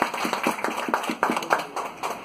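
A small audience applauding: a loose scatter of hand claps, several a second, that dies away near the end.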